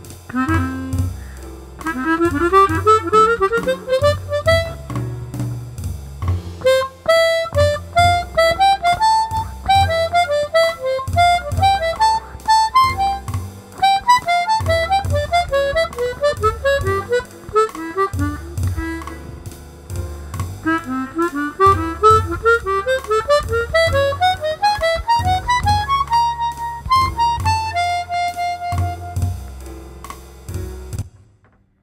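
Chromatic harmonica improvising in runs of major and minor thirds, phrases climbing and falling in quick notes, ending on a held note near the end.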